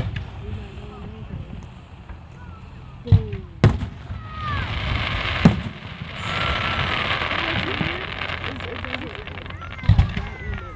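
Aerial fireworks: sharp bangs of shells about three seconds in, again half a second later, at about five and a half seconds and near the end. Between the bangs there is a long stretch of hissing and crackling, with spectators' voices faintly underneath.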